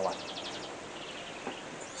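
Caged canaries chirping: a quick trill of repeated high notes at the start, then softer twitters.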